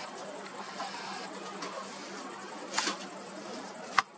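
Crickets chirping in a steady high trill, over a faint low hum, with a couple of short clicks in the second half.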